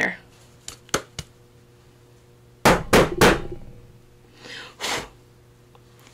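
Handheld metal hole punch clacking as its jaws are squeezed and snapped shut, with a few single clicks, then a quick run of three or four loud snaps. The punch is being worked to free chipboard stuck in it.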